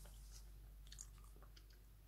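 Near silence with faint mouth sounds of someone eating a spoonful of ice cream. A few small clicks and smacks come through, one slightly louder about a second in.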